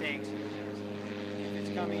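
A steady engine drone in the background, growing slightly louder near the end.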